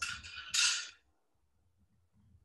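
Metal scraping and rattling at a small enamelling kiln as a piece is handled with a firing fork: two short scrapes in the first second, the second louder.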